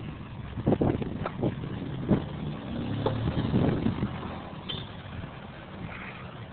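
Street traffic: a steady low engine hum of passing vehicles, with a few sharp clicks in the first two seconds.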